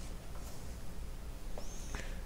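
Quiet room hum with faint handling sounds as velvet yarn is drawn through the crocheted fabric with a tapestry needle, and a brief faint high squeak near the end.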